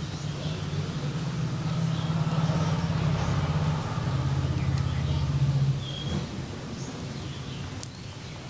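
A low, steady engine hum, as of a motor vehicle running nearby, that stops about six seconds in. Short, faint bird chirps sound over it.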